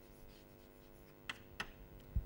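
Chalk writing on a blackboard: faint scratching strokes, with two sharper chalk strokes about a second and a half in.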